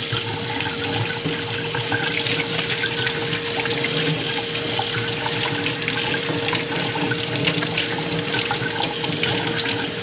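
Kitchen faucet running steadily into a stainless-steel sink while hands are rubbed and rinsed under the stream, with splashing and a steady hum underneath.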